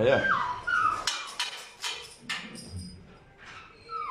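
An animal whining: two short, high whines falling in pitch near the start, followed by a few sharp clicks or knocks.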